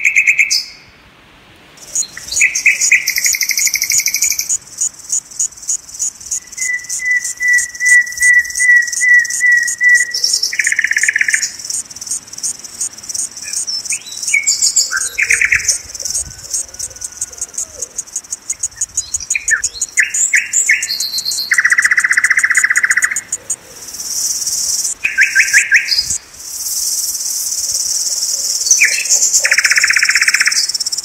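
Birds chirping and calling in short phrases, including a quick run of repeated notes, over a continuous high, rapidly pulsing insect buzz.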